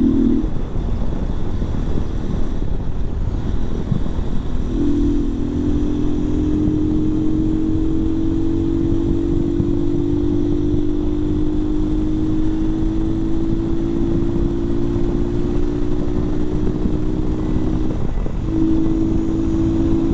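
Mondial RX3i Evo's single-cylinder engine cruising at highway speed under heavy wind rush on the microphone. From about five seconds in, a steady engine drone holds with its pitch creeping slowly upward, breaks off briefly near the end, then returns.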